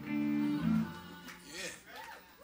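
A guitar chord strummed and left ringing for about a second before it fades.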